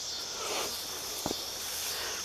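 Steady high-pitched insect chorus in tall grass, with one light click a little past halfway.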